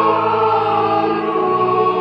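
Church choir singing held, slowly moving notes over a steady sustained low accompaniment.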